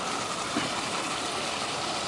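Small waterfall pouring over rocks into a stream, a steady hiss of falling water.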